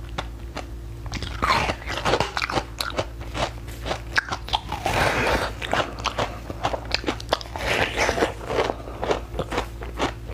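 A block of frozen basil-seed ice being bitten and chewed close to the microphone: many small crackles and clicks, with louder crunching bursts three times.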